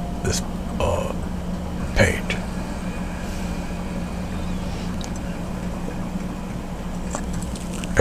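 Steady low hum, with a few faint brief scrapes and a short click about two seconds in from a palette knife working thick paint and modeling paste on a canvas panel.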